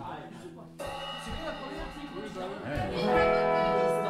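Musical instrument notes ringing out on stage. A first chord or tone starts suddenly about a second in and fades, then a louder, steady held chord begins near three seconds in, with low talk underneath.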